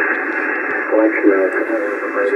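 A ham radio operator's voice received as single-sideband on the 21 MHz band through a software-defined radio: thin and telephone-like over a steady hiss of band noise. There is a short gap in the talk, and he speaks again from about a second in.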